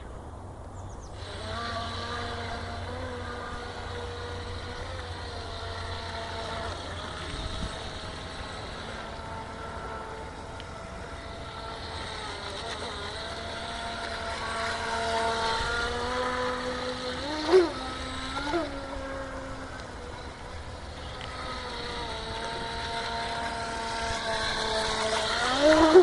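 Electric motor of a YPC Bro RC Surfer model running on the water, a steady whine that drifts up and down in pitch with the throttle. A short, sharp burst of throttle a little past two-thirds through makes the loudest moment.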